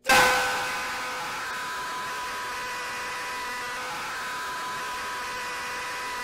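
A loud, harsh sound effect: a hiss of noise with a steady held tone in it. It hits suddenly at the start, eases back over the first second, then holds steady.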